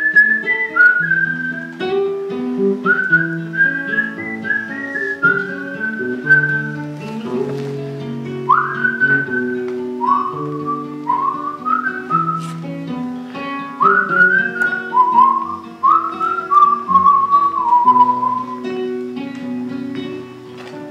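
Acoustic guitar playing a song's introduction, with a whistled melody over it in phrases that slide up into each note. The whistling stops near the end, leaving the guitar alone.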